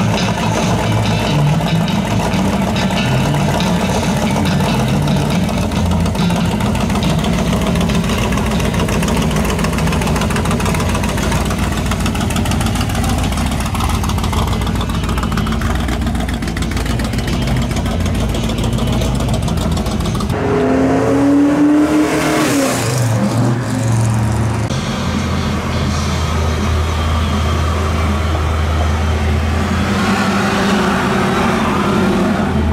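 Rat-rod pickup's engine running loudly as it rolls slowly past. After a cut about two-thirds of the way in, a C5 Corvette's V8 revs up once and then settles to a steady idle.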